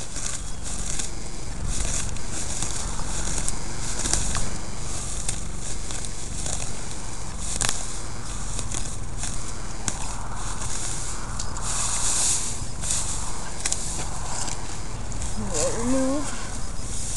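Plastic net wrap being cut and stripped off a round hay bale: scattered sharp snips and clicks, then a crinkly rustle of the netting dragging over the hay, loudest about ten to thirteen seconds in. A steady low rumble runs underneath.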